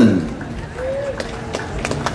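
A man's amplified voice finishes an announcement. Then an audience breaks into scattered hand claps, a few at first and more toward the end.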